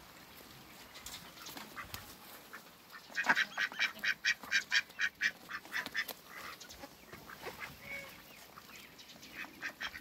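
Ducks quacking: after a quiet start, a fast run of short quacks, about five a second, lasts about three seconds, then only a few scattered calls follow until more quacking starts near the end.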